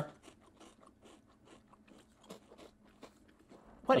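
Square cheese crackers being chewed, a quick irregular run of faint crunches.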